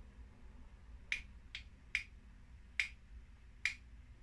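Two wooden spatulas used as drumsticks struck together, five short sharp clicks: three quick ones, then two more spaced out.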